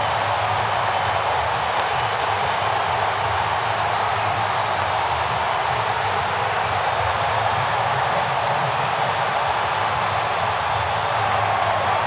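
A large stadium crowd cheering in one steady, unbroken din, celebrating a three-run home run.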